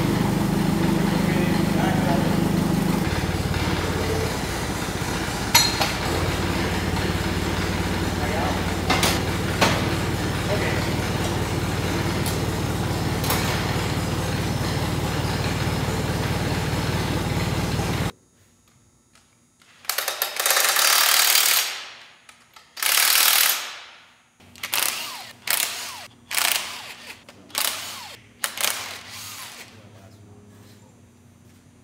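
A forklift engine runs steadily, with a few sharp clanks, while lifting the engine; it stops abruptly. After a short pause, a cordless impact wrench fires in bursts on the Perma-Clutch bolts: two longer runs, then several short ones.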